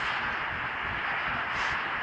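Steady, even background noise of the room with no distinct sounds standing out.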